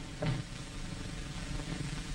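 Steady hiss of an old film soundtrack with no words over it, and a brief faint low sound about a quarter second in.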